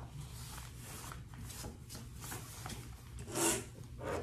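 Soft, irregular rubbing of a hand stroking a Yorkshire terrier's freshly clipped coat, with small scrapes and one louder brief rustle near the end.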